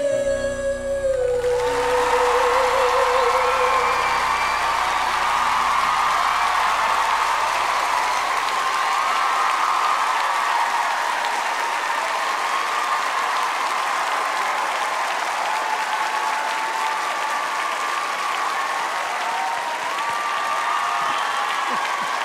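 A woman's long held final sung note, with vibrato, fades out over the backing band's last chord in the first few seconds. Under and after it, a studio audience applauds and cheers steadily.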